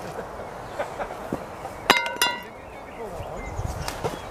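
Rusty steel crowbar clanking twice against metal, the two strikes a quarter second apart about two seconds in, each ringing briefly. A few lighter knocks come before them.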